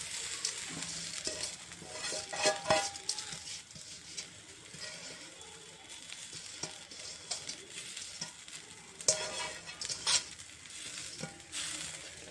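Spiced, ghee-coated rice sliding from a bowl into a hot steel kadai and sizzling, with the scrape and tap of the bowl rim and fingers against the pan a few times.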